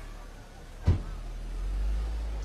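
A car driving past close by, a low rumble that grows louder in the second half, with a single sharp thump about a second in.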